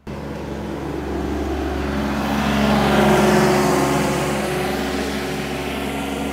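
A motor vehicle's engine running steadily as it passes, swelling to its loudest about three seconds in and then easing off.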